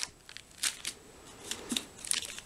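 Faint handling of ration packaging: a few light clicks and rustles as a foil sachet is set down on a wooden table and a plastic blister tray is picked up.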